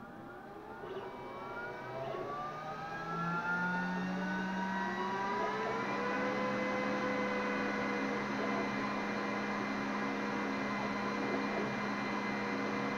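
Glowforge Pro laser cutter powering up: its fans spin up with several whines rising in pitch over about the first six seconds, joined by a low hum about three seconds in, then run steadily.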